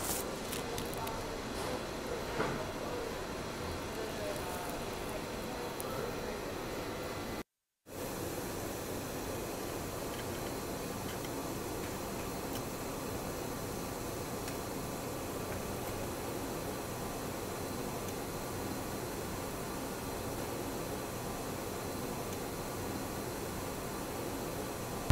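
Steady hiss of factory room noise from running machinery and ventilation, with no distinct events, and a brief gap of silence about seven and a half seconds in.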